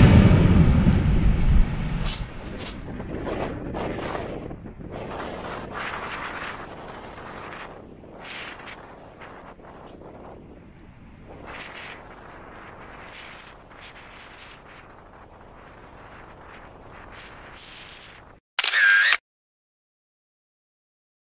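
Wind buffeting the microphone on an exposed coast, strongest in the first couple of seconds and then dying down. Near the end comes a brief camera-shutter sound, cut off into silence.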